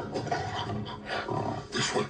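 A gorilla roaring in a film trailer's soundtrack, loudest near the end, heard through a TV's speakers.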